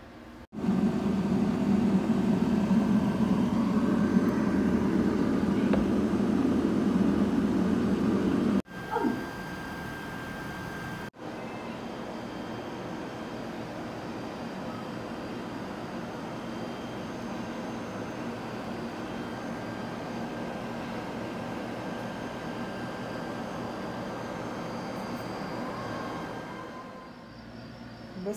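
A countertop air fryer's fan running with a steady whir and low hum while it cooks. It is louder for the first eight seconds or so, then quieter after a couple of abrupt cuts.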